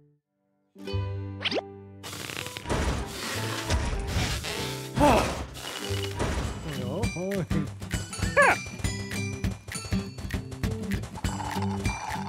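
Cartoon soundtrack music that starts about a second in after a short silence, with the characters' wordless cartoon voices calling and exclaiming over it.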